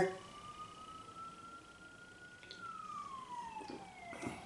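A siren wailing faintly, its pitch rising slowly, then falling over the last second and a half, and starting to rise again at the end.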